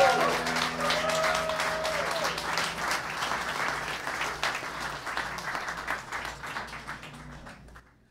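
Audience applauding and cheering as a rock band's last chord rings out, the applause fading away over several seconds and stopping just before the end.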